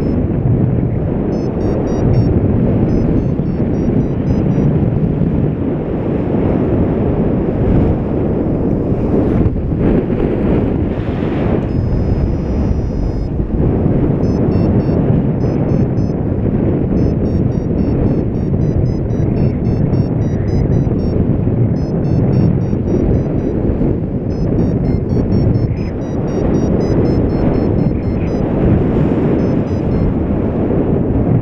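Wind rushing over the camera microphone in paraglider flight, loud and steady. Through it, a flight variometer gives faint, high beeps several times a second, signalling climb in lift, with a pause and then a brief steady tone in the middle.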